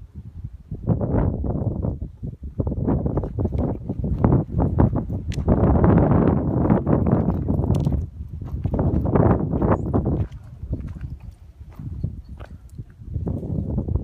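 Footsteps and dry brush crackling and snapping close to the microphone in uneven bursts, loudest around the middle, as someone pushes through a thicket of bare twigs.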